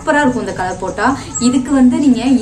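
A woman's voice speaking, with nothing else heard.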